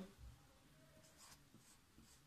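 Faint sound of a pen writing on paper as a symbol is drawn.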